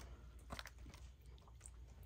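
Near silence with faint, small handling sounds from a skinned rabbit carcass being moved on a plastic cutting board, including a soft click about half a second in.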